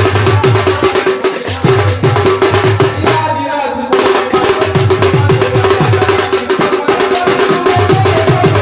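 Khol drum and kasa (bell-metal gong) playing a fast folk dance rhythm, the gong's ringing tone held over quick low drum strokes. The playing drops out for about a second around three seconds in, then resumes.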